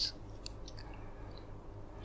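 A quiet pause: a steady low room hum with a few faint mouth clicks and lip sounds about half a second in, from a person lying still before speaking.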